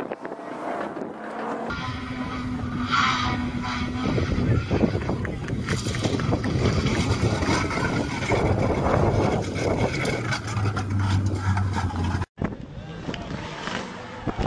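Rally car engines running hard at high revs, with wind buffeting the microphone. The sound drops out abruptly for a moment near the end.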